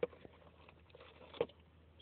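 A few light clicks and taps of hands handling packaging as AA batteries are taken out of a cardboard box, the sharpest click about one and a half seconds in.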